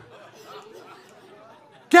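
Faint murmur of several voices chattering in a large hall, then a man's voice cutting in loudly near the end.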